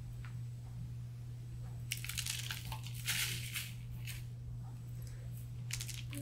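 Table salt pouring from a canister's spout into a measuring spoon, a dense grainy patter about two seconds in that lasts a second and a half, with a few light ticks around it. A steady low electrical hum sits beneath.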